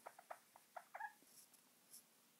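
Faint whiteboard eraser squeaking across the board as it wipes: a quick run of short squeaks in the first second or so.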